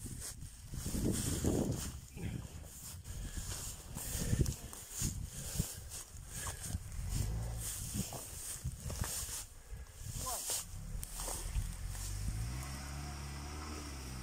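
A quad bike's engine running at a distance, rising in pitch near the end as the rider gives throttle to cross a mud bog. Rustling and footfalls in grass close to the microphone come through the first half.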